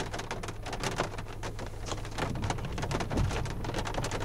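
Rain falling on a car's windshield and body, heard from inside the car: a dense, irregular patter of drop ticks over a steady low hum.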